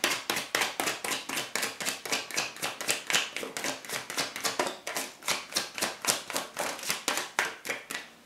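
Tarot cards being shuffled by hand: a rapid, steady run of crisp card slaps, about five or six a second, that stops abruptly at the end.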